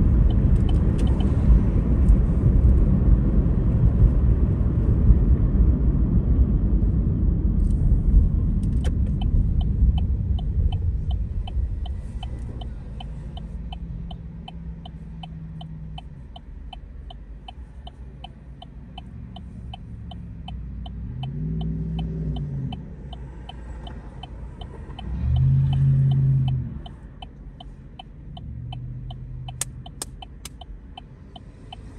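Tyre and road rumble inside a moving car, fading as the car slows to a stop. The car's turn-signal indicator then ticks steadily for the left turn, while a low engine hum swells a few times, loudest near the end.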